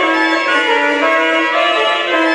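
Pipe organ built by Joaquín Lois in 2009 playing a fast allegro: a quick succession of held notes with a bright, many-layered tone.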